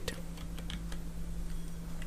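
A few faint keystrokes on a computer keyboard as a word is typed, over a steady low hum.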